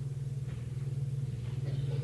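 A steady low hum with no other clear sound.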